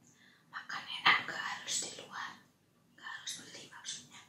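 A woman whispering close to the microphone in short breathy bursts, with a brief pause in the middle.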